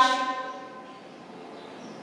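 A horn blast at one steady pitch, fading out in the first half second, followed by faint room tone.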